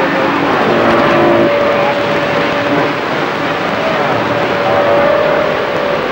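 CB radio receiving an empty channel: loud steady static hiss with faint whistling heterodyne tones drifting in and out.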